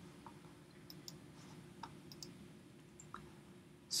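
A few faint, scattered computer mouse clicks over a low steady hum.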